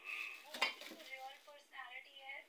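Metal kitchenware clattering, with a sharp clink about half a second in, and voices talking.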